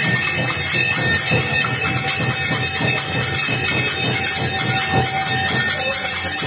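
Hindu temple aarti music: continuous clanging of bells and cymbals over a steady rhythmic beat.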